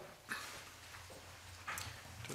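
Faint committee-room noise: two brief rustling knocks, the first about a third of a second in and the second near the end, over a steady low electrical hum.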